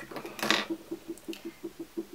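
A gold-cased lipstick being handled and uncapped: a click, then a short scrape about half a second in, followed by faint rapid ticking, about eight a second.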